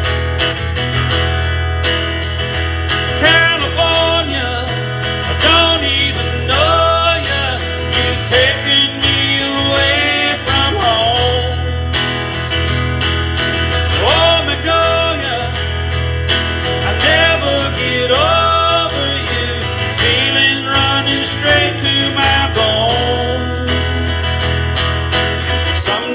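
Steel-string acoustic guitar strummed steadily in a country-folk song, with a melodic line, heard as wordless singing, gliding over it in short phrases that recur every few seconds.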